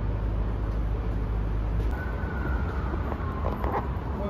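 Steady low rumble of an underground parking garage. From about halfway in, a faint distant siren wails, falling slowly in pitch, and a few knocks sound near the end.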